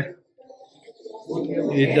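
A man's voice holding one long drawn-out word, starting a little past halfway after a brief quiet moment.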